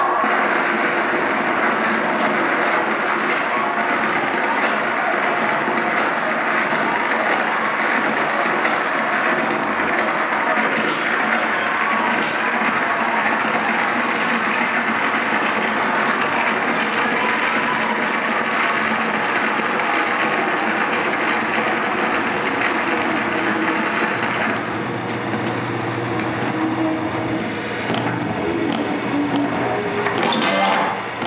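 Live harsh-noise performance on electronics through a PA: a loud, unbroken wall of distorted noise. About 24 seconds in, the hissing top thins out and a low steady drone comes in underneath.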